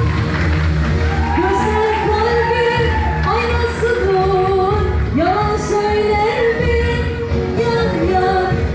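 A woman singing a Turkish pop song over an amplified backing track with a dense, steady low accompaniment, the sound filling a large hall.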